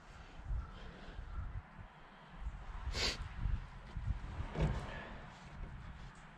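Low, uneven rumble with a sharp click about three seconds in and a softer click near five seconds: handling noise at a snowblower's oil filler.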